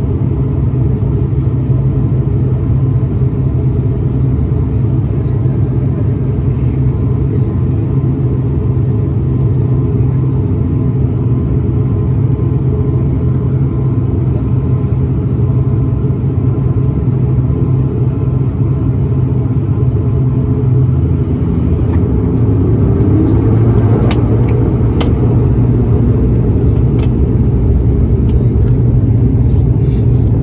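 Inside the cabin of an ATR 72-600, the twin turboprop engines and propellers drone as a steady low hum. A little past two-thirds of the way through, the pitch rises and the drone grows slightly louder as engine power is increased, with a few light clicks afterwards.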